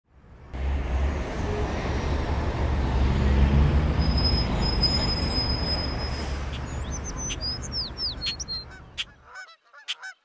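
A loud, steady rumbling noise that slowly fades and then cuts off suddenly about nine seconds in. Birds chirp over it from about seven seconds, and honking bird calls follow the cut-off.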